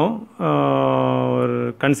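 A man's voice holding one long, level vowel for over a second, a drawn-out hesitation sound between bits of speech.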